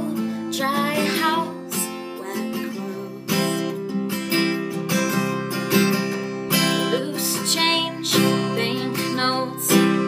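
Acoustic guitar strummed steadily in a folk-pop accompaniment, with a woman singing a phrase near the start and coming back in at the very end; the middle few seconds are guitar alone.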